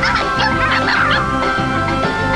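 A cartoon animal's rapid, wavering calls, their pitch bending quickly up and down, over background music. The calls stop a little past a second in, and the music carries on.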